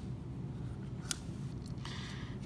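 Quiet handling of a plastic toy, with one sharp click about a second in as a Cyber Planet Key is pushed into the Menasor figure's key port.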